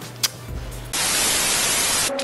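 Static sound effect: a loud, even hiss of white noise that starts abruptly about a second in and holds steady.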